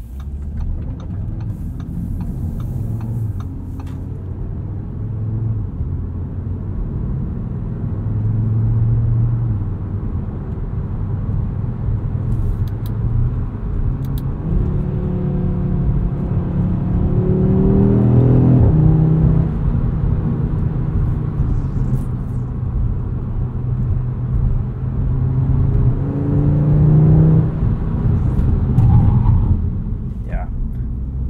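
2022 Audi RS 3's 2.5-litre turbocharged inline five-cylinder, fitted with the RS sport exhaust, heard from inside the cabin while driving. Its note rises in pitch under acceleration about halfway through and again near the end, over a steady rumble of engine and road.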